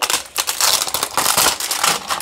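Clear plastic shrink wrap crinkling and crackling as it is torn and stripped off a cardboard trading-card box, a continuous run of small crackles throughout.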